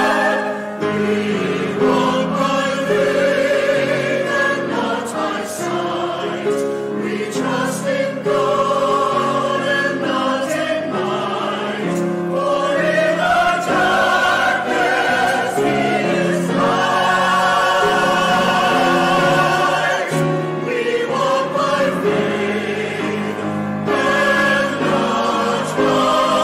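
Mixed church choir of men's and women's voices singing, accompanied by grand piano.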